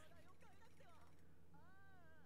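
Near silence: faint, high-pitched voices under a steady low electrical hum.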